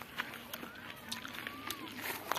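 Footsteps on dry grass and sandy ground as a person walks, a few uneven crunching steps. A faint thin call that rises and falls in pitch sounds near the end.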